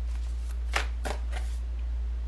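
A deck of tarot cards being shuffled by hand: a handful of quick, sharp card snaps and slides, over a steady low hum.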